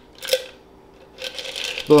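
A stirred cocktail strained from a stainless steel mixing tin over a large ice ball in a rocks glass. There is a sharp metallic clink about a third of a second in, then light clinking and the trickle of the pour in the second half.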